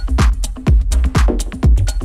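Techno music from a live DJ set: a steady kick drum about twice a second, with hi-hats and synth layers over it.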